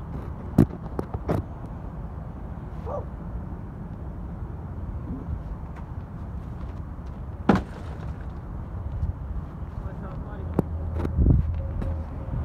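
A steady low rumble with a few sharp knocks: two in the first second and a half and a louder one a little past seven seconds. Near the end a deeper hum comes in with a heavy thump.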